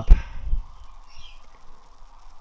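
A sharp knock at the very start, then purge gas bubbling faintly and steadily up through soapy water from a degassing lance under water test.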